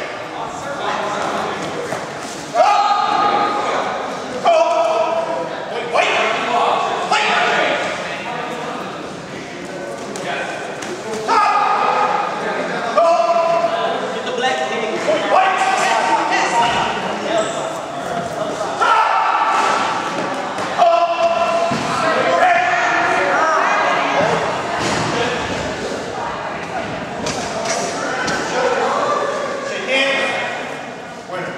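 Voices shouting and calling out through most of the stretch in a large, echoing gymnasium, with thuds now and then from the sparring on the wooden floor.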